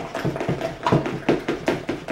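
A utensil beating cheesecake batter by hand in a plastic mixing bowl, knocking and scraping against the sides in quick, uneven strokes, several a second.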